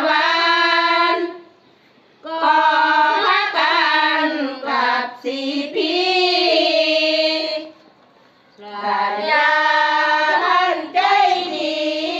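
A group of women chanting sarabhanya (Thai Buddhist verse) together, unaccompanied, in long sung phrases with two short pauses between them.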